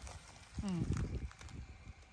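Rustling and light crackling of long grass and leafy plants being moved through, with soft low knocks. One short call in a person's voice, falling in pitch, comes about half a second in.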